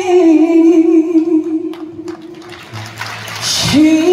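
A woman singing a slow ballad live, holding one long note with a slight vibrato that fades out about two and a half seconds in. A quick breath near the end, then the next note begins.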